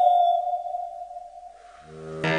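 A woman's voice holding a high, pure, whistle-like tone into a microphone as vocal mimicry, sliding slowly down in pitch and fading out. Just before the end a low drone sets in.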